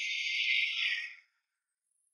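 Insects chirring in a high, hissing drone that swells, then cuts off suddenly a little over a second in.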